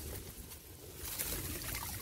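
Quiet trickling and sloshing of water as a mesh fish trap is lifted out of a shallow ditch and the water drains through the netting.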